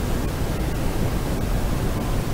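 Steady, even background hiss with no other sound, the noise floor of the recording's microphone.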